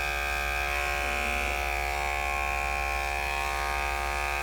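Electric pet grooming clippers fitted with a #40 blade, running with a steady, unchanging hum as they clip close against the skin through matted fur.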